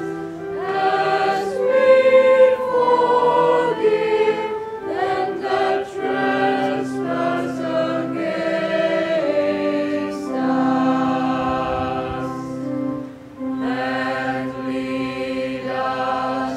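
A choir singing a slow hymn in long held notes, with a short break between phrases about thirteen seconds in.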